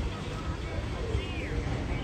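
Outdoor street background in a pause between words: a steady low rumble with faint voices in the distance.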